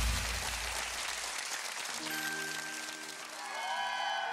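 Audience applause as loud pop music breaks off, its bass fading out over the first second or so. About halfway through, quiet held notes of the next song's intro come in under the applause.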